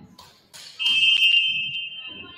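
Volleyball referee's whistle: one loud, long, steady blast starting just under a second in, fading away at the end.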